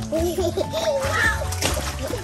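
Swimming-pool water splashing as toddlers are bounced and dipped in it, mixed with a small child's voice and background music.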